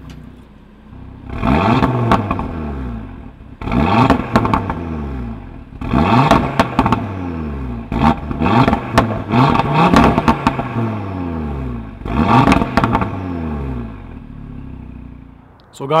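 2018 Audi RS3's turbocharged 2.5-litre five-cylinder engine being revved at a standstill: about five blips, each climbing in pitch and falling back toward idle, with sharp crackles from the exhaust among them.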